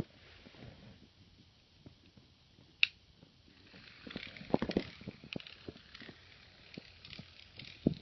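Scattered clicks and light rustling of plastic toy trains and track being handled, with one sharper click about three seconds in and a busier run of clicks from about four seconds on.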